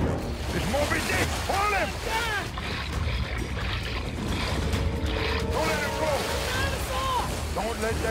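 A boat's motor running with a steady low hum and water churning as a hooked alligator is held alongside the boat, with short shouted calls throughout.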